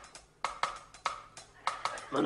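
A sparse break in a song: light percussion taps, a handful of sharp clicks in a loose even rhythm, with the rest of the music dropped back.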